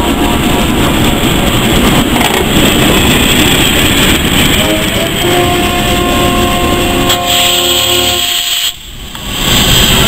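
Steam locomotive No. 4936, a GWR Hall class 4-6-0, standing in steam with a loud, steady hiss. About halfway through, a Class 08 diesel shunter draws alongside with its steady engine note. Near the end a sharper burst of steam hissing starts after a brief dip.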